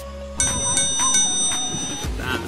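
A bright bell "ding" sound effect, struck a few times in quick succession about half a second in and ringing on, over background music.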